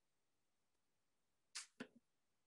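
Near silence: faint room tone, broken near the end by two brief, soft, sharp noises about a quarter second apart.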